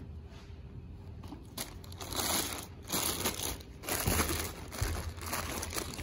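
Thin clear plastic bag crinkling and rustling in gloved hands as a cordless ratchet is worked out of it. The rustles come in irregular bursts, faint at first and busier from about two seconds in.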